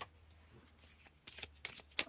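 Faint crisp rustles and flicks of a deck of oracle cards being handled and shuffled, coming as a few short sharp ticks in the second half.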